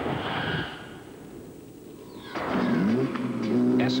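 The rumble of an explosion sound effect dies away in the first second. After a quieter moment, a car engine revs up, its pitch rising and then holding steady.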